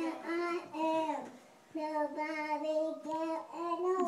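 A young girl singing, holding long notes, with short breaks between phrases.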